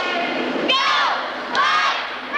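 A cheerleading squad shouting a cheer in unison, the massed girls' voices coming in rhythmic shouts, two of them close together near the middle and end.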